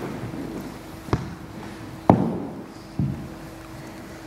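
Three sharp knocks about a second apart, the middle one the loudest: a wooden cricket bat tapped on a wooden floor.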